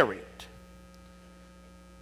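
Steady electrical mains hum from the sound system, with the end of a man's spoken word dying away in the room's echo at the start and a faint click about half a second in.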